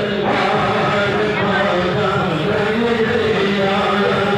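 Men's voices chanting a devotional melody, with long held notes that slide up and down.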